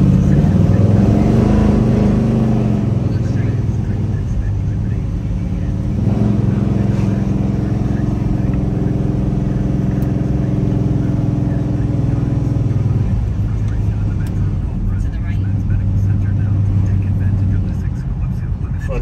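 1970 Chevelle SS 454's big-block V8 running as the car drives, heard from inside the cabin. The engine note is strong at first and then eases off. It picks up again about six seconds in, then drops to a lower, steady note for the last few seconds.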